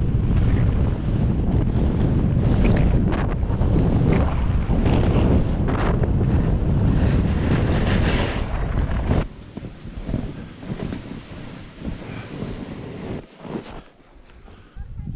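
Wind buffeting the camera's microphone as a snowboarder rides fast downhill, the board sliding and scraping over packed snow. About nine seconds in the noise drops off abruptly, leaving quieter scraping and crunching of snow.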